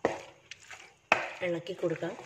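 Wooden spatula stirring squid pieces in a thick tomato masala in a nonstick frying pan: one scraping stroke at the start and another about a second in.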